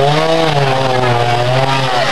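Trials motorcycle engine held at high revs: one steady note that climbs slightly at the start, then holds and eases a little toward the end.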